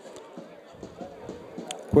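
Faint outdoor ambience from a football pitch during play, with one short sharp knock near the end.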